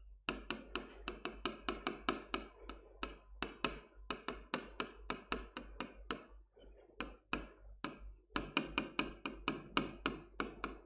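A pen tapping and clicking against a writing board as code is handwritten: a quiet, irregular run of short taps, several a second, with a few brief pauses.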